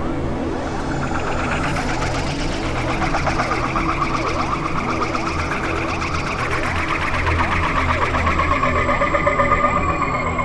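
Experimental electronic synthesizer music: a steady low drone under many overlapping tones that glide up and down in pitch, with a fluttering higher tone that grows a little louder in the second half.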